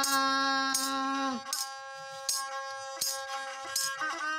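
A Santali banam, a long-necked bowed folk fiddle, playing a steady bowed melody with a raspy, buzzing tone. A man's held sung note glides down and stops about a second and a half in. Sharp percussive strikes keep a beat about every three-quarters of a second.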